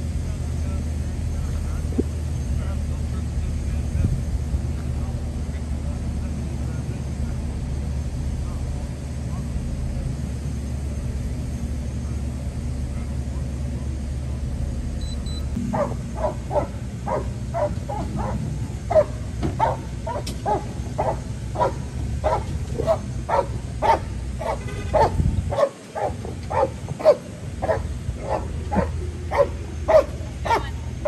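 A low, steady rumble, then from about halfway through a dog barking over and over, roughly one to two barks a second: the police K9.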